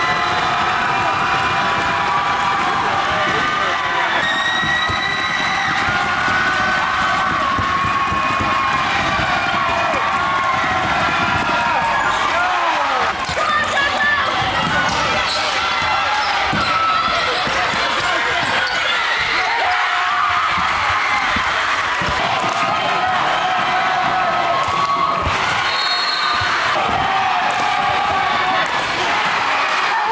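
Live basketball game sound: a ball bouncing on a hardwood gym floor, with players and spectators calling out and talking throughout.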